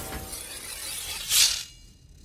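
One short, sharp metallic shing about one and a half seconds in: the film sound effect of long metal claws sliding out from a woman's fingertips. Music dies away before it.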